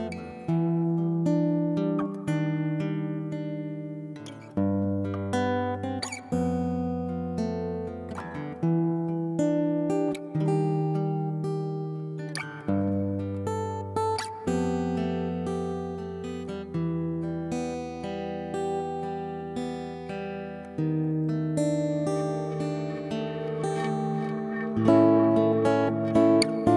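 Background music on a plucked string instrument: slow notes and low chords, each struck and left to ring and fade, one every second or two.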